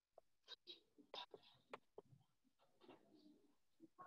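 Near silence, with faint, indistinct voice sounds and a few soft clicks.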